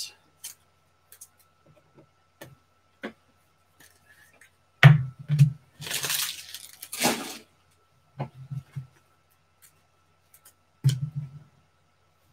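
Foil trading-card pack being torn open, two short ripping hisses just past the middle, among knocks and clicks of packs and cards handled on a tabletop.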